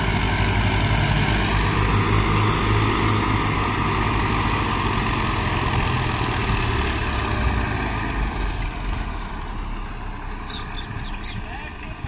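Tractor diesel engines running under load as a Massey tractor tows a loaded tractor and trolley. There is a steady, low engine note that fades gradually over the last few seconds as the tractors move off.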